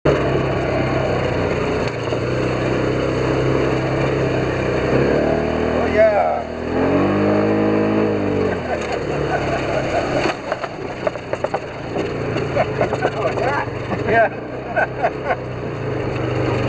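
Polaris side-by-side's engine running as it drives, revving up and easing off about halfway through. A run of short knocks and rattles follows over the rough track.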